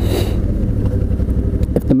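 Suzuki V-Strom 650's 645 cc V-twin engine running steadily at cruising speed, under heavy wind rumble on the microphone. A brief hiss at the very start.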